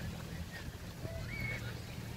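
Beach ambience: a steady low rumble of wind and lake surf, with a few faint, distant rising-and-falling calls from beachgoers.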